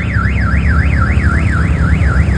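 Electronic car alarm warbling rapidly up and down in pitch, about four sweeps a second, over a low rumble.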